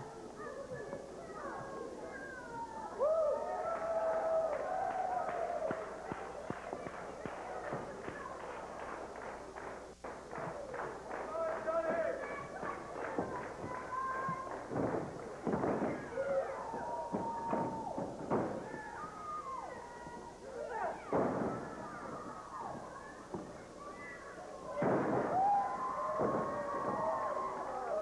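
A small crowd shouting and yelling at a live pro-wrestling match. There is a stretch of rhythmic clapping in the middle, and several loud thuds and slaps from the wrestlers in the ring, the loudest near the end.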